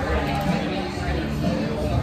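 Restaurant background: other diners' voices talking, with music playing underneath.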